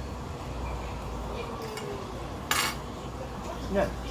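Metal fork clinking and scraping on a dinner plate, with one sharp clatter of cutlery on crockery about two and a half seconds in, over a steady low hum.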